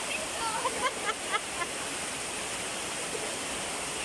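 Heavy rain falling in a steady, even hiss on a flooded road.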